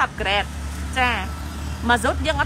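A person speaking in two short phrases over a steady low hum.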